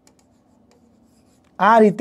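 Chalk writing on a blackboard: faint scratching and tapping strokes as a word is written, followed near the end by a man starting to speak.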